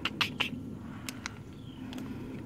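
Crinkling of a Smartfood popcorn snack bag being handled and turned in the hand: three sharp crackles in the first half second, then a few more about a second in and near the end.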